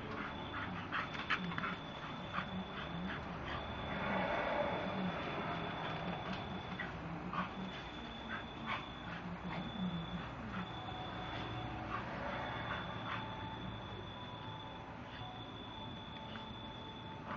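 Bull terrier making small vocal sounds as it plays, with scattered sharp clicks and scuffs, and a steady high tone that keeps stopping and starting.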